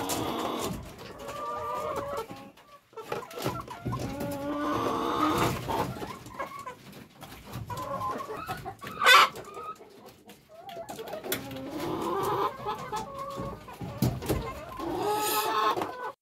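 Domestic chickens clucking in a coop, in short repeated calls throughout, with one louder, sharper sound about nine seconds in.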